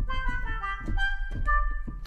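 ProjectSam Free Orchestra 'Tongue in Cheek' comic patch from its Animator series, played from a keyboard: a quick, bouncy run of short staccato notes hopping up and down in pitch, about five notes a second, in a woodwind-like cartoon orchestral sound.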